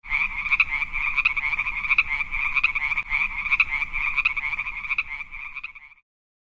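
A frog croaking in a steady, fast-pulsing trill that fades out near the end.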